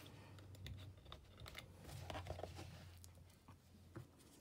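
Faint handling of paper and a book: small taps, clicks and light rustles as pages are moved and a paper cutout is pressed down, over a low steady hum.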